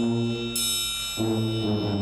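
Community concert band playing, with brass holding low sustained chords that move to a new chord a little over a second in. A high, ringing struck note enters about half a second in and hangs over the chords.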